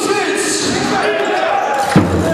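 A basketball bouncing on the court, struck once sharply near the end, over many overlapping voices in the hall.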